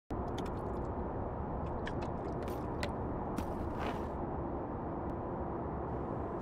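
Aluminium beer cans clicking and knocking together as they are packed into a canvas tote bag, with several sharp clicks in the first three seconds and a brief rustle of the bag just before four seconds, over a steady low rumble.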